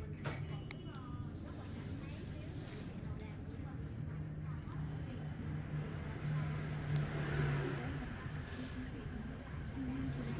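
Low, indistinct voices in the room over a steady low hum, with a few faint clicks near the start.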